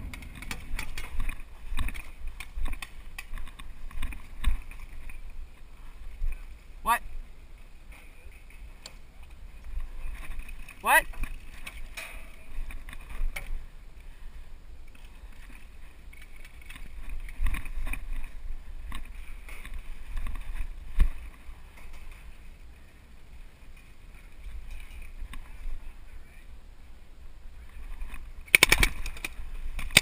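Wind rumbling on the camera microphone, with scattered knocks and pops and faint distant voices.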